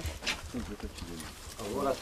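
Speech: voices talking.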